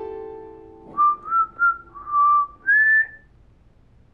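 A man whistling a short phrase of five notes through pursed lips. The fourth note is held longer, and the last rises higher and is held briefly.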